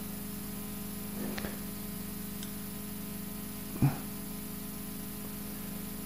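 Steady low electrical hum with faint background hiss during a pause in speech. A faint short sound comes about a second in, and a brief pitched blip just before four seconds.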